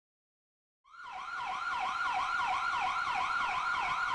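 Police car electronic siren on a fast yelp, its pitch sweeping rapidly up and down over and over; it fades in about a second in and holds steady.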